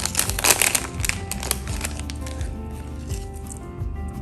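Clear plastic packaging crinkling as paper flowers are handled, heard as dense crackling over the first two seconds or so and then fading, over background music.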